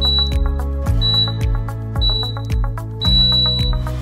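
Digital interval timer beeping a countdown: three short high beeps a second apart, then one longer beep marking the end of the work interval. Background music with a steady beat plays under it.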